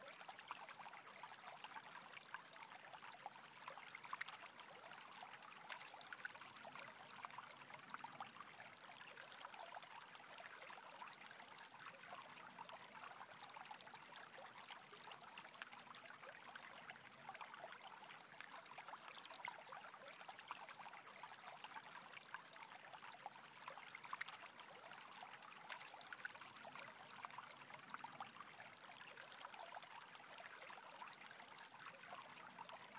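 Faint, steady rushing and trickling of a stream flowing over rocks.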